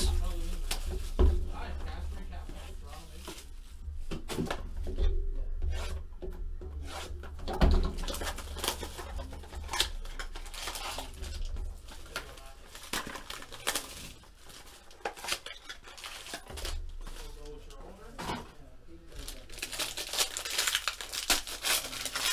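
Plastic shrink wrap being torn off a cardboard trading-card box and crinkled in the hands, then the box's cardboard flap being opened and a foil card pack handled. It comes as irregular rustling, tearing and crinkling with a few louder crackles, over a low steady hum.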